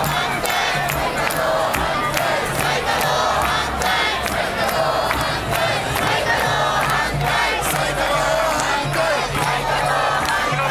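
Large protest crowd chanting and shouting, many voices overlapping in a steady, loud mass, typical of the rally's repeated slogan "saikadō hantai" ("against the restart").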